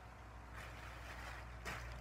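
Pedestal fan running with a faint steady hum, joined from about half a second in by faint rustling and a soft knock near the end.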